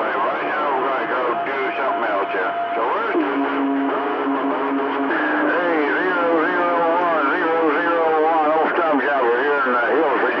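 Voices received over a CB radio on channel 28: garbled and overlapping, with a narrow, tinny sound. Steady tones sit under them: a higher one for the first few seconds, then a lower one for about two seconds.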